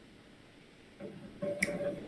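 Near silence for about a second, then a man's drawn-out hesitant 'uh' with a short sharp click partway through it.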